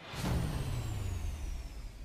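A whooshing swell that builds over the first half second and carries a low rumble slowly falling in pitch, with a faint high tone gliding downward above it; it fades near the end.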